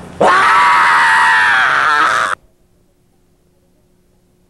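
A man's long, high-pitched scream, held for about two seconds and cut off suddenly, leaving only a faint steady hum.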